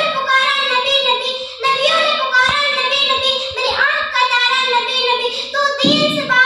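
A young girl's voice singing in long, held melodic phrases into a microphone.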